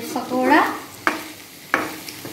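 Metal spatula stirring food in a frying wok, with a faint sizzle and two sharp knocks of the spatula against the pan, about a second in and near the end. A voice is heard briefly at the start.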